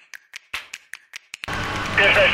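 Typewriter keys clacking in a quick, irregular run of about a dozen strikes, a sound effect for text being typed out. About one and a half seconds in, loud intro music cuts in.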